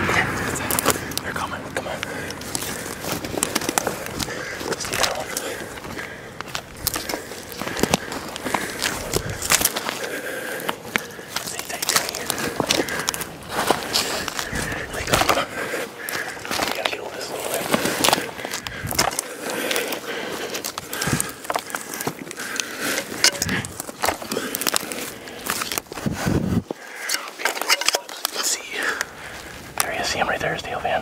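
Camouflage clothing brushing and dry grass stalks crackling and rustling as hunters crawl through a field, a dense run of short scratchy clicks.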